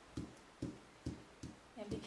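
Soft, regular taps of a felt ink-applicator pad dabbing alcohol ink onto a thin metal sheet laid on a mat, about two taps a second.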